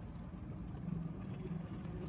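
Low steady rumble of background noise with a faint hum coming in about a second in.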